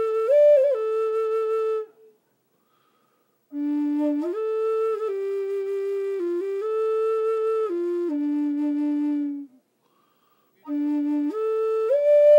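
Native American flute playing slow, held notes that step between a few pitches, in phrases broken by two silent breath pauses, about two seconds in and again about nine and a half seconds in.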